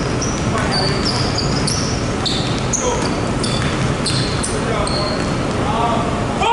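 Basketballs bouncing on a hardwood gym court amid many short, high sneaker squeaks, several a second.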